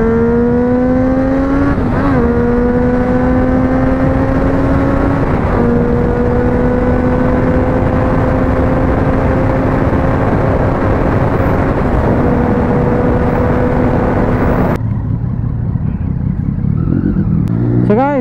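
Motorcycle engine pulling hard at highway speed, its pitch climbing with two brief drops as it shifts up, then holding steady revs under a rush of wind. Near the end the sound changes abruptly to a quieter, lower engine note.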